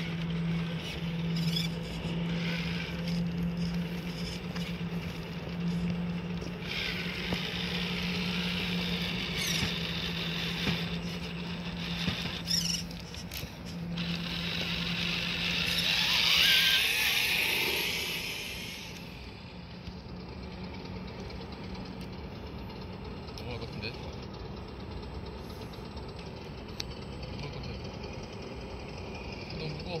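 Electric motors and geared drivetrains of 1/10-scale RC rock crawlers whining as they crawl up a rock crack, with tyres scrabbling on stone. The loudest stretch is about two-thirds of the way through, as the red crawler climbs a steep step.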